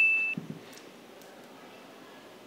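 A bright, ringing single-note ding, like a struck chime, dies away about a third of a second in. A brief low murmur follows, then quiet room tone.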